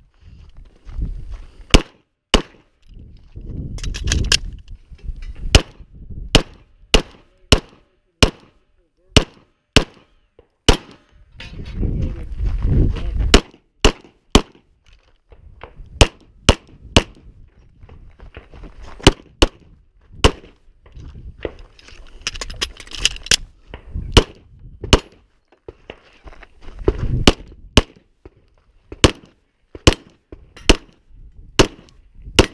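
Semi-automatic pistol fired in a long run of shots during a USPSA Limited-division stage, often two in quick succession, about half a second to a second apart, with short pauses. Stretches of low rumble on the microphone come between some of the strings.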